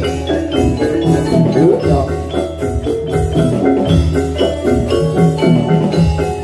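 Javanese gamelan music: metallophones playing a dense run of ringing notes over a steady low drum beat, the accompaniment for a jathilan horse dance.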